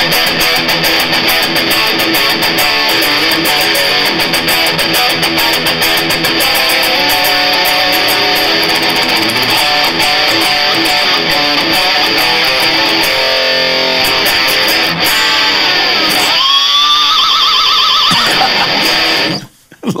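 Fernandes Revolver electric guitar played loud and distorted, with dense fast riffing and soloing. Near the end a note slides up and is held with wide vibrato, then the playing stops suddenly.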